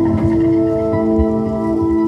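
Singing bowls ringing with a wool-wrapped wooden striker: several sustained tones sound together, and fresh tones join after about a second.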